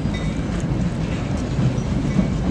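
Steady rumbling, hissing noise of a bilevel commuter train at the station, with a few faint steady tones in the first half second.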